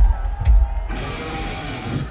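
A live rock band playing through a stadium PA: two heavy low drum hits, the second about half a second in, then a sustained ringing wash, like a cymbal crash with a guitar chord, from about a second in.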